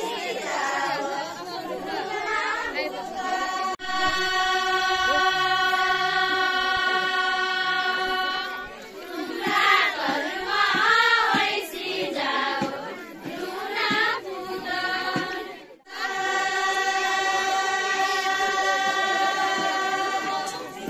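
A group of women singing a Doteli folk song of the Putla dance together, holding long, steady notes. The middle of the passage is louder, with the voices wavering, before the long held notes return near the end.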